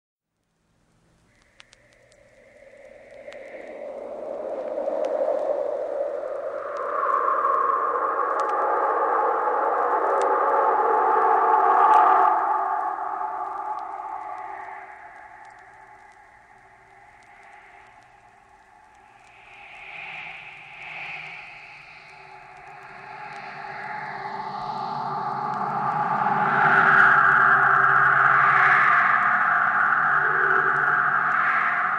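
Early-1960s electronic tape music: filtered white noise and sustained oscillator tones, shaped and contoured by amplifiers and filters. It swells in from silence about a second in, thins out midway, then builds again toward the end.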